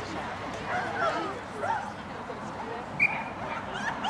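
A dog yipping and whining in short, high calls, the loudest about three seconds in, over a murmur of spectator chatter.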